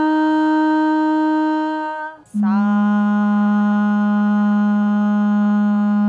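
A woman's voice singing the swara Pa as a long, steady held note, then, after a brief break about two seconds in, dropping a fifth to the lower Sa, held steady without wavering. This is the descending half of the Sa-Pa-Sa warm-up, where the voice relaxes after the high Sa.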